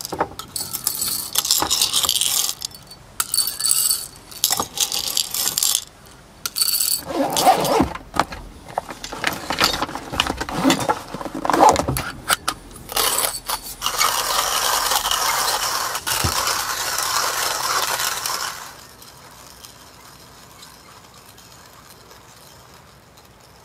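Coffee beans spooned from a glass bowl into a hand coffee grinder, rattling and clinking in irregular clatters. This is followed by handling in the plastic pockets of an organiser: rustling and a steady scraping for several seconds that stops a few seconds before the end.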